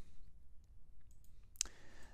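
A few faint computer mouse clicks, the clearest about one and a half seconds in.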